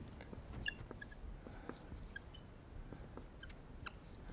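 Dry-erase marker writing on a whiteboard: faint, irregular squeaks and taps as the letters are drawn.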